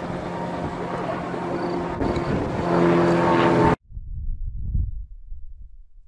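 Helicopter engine and rotor running steadily overhead, a drone mixed with wind noise that cuts off abruptly a little under four seconds in. Low, gusty wind buffeting the microphone follows.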